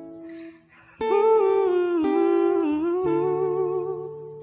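Filipino pop (OPM) love ballad: a solo voice singing held, gliding notes over acoustic guitar, the phrase coming in about a second in after a brief lull.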